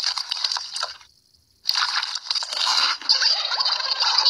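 Wet, crunchy mouth sounds of someone sucking and chewing on sticky candy, broken by a brief near-silent gap about a second in.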